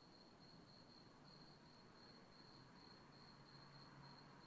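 Near silence with a faint, steady high-pitched trill of crickets that swells and fades slightly.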